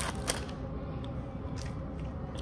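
Peel-off lid being pulled from a small plastic oats cup and the cup handled: a few light clicks and crinkles over low room noise.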